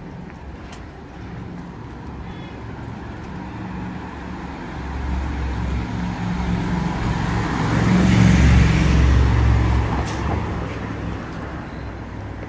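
A car driving past close by on the street, its engine and tyre noise building to a peak about eight seconds in and then fading, over a low background of town traffic.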